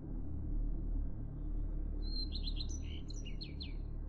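A quick run of high bird chirps about halfway through, lasting under two seconds, over a low steady drone.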